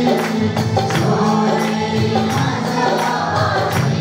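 A church worship group singing a Marathi Christian worship song together to instrumental accompaniment, a tambourine keeping the beat.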